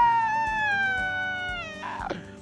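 A single long wolf-like howl, held for nearly two seconds and sliding slowly down in pitch before it breaks off near the end.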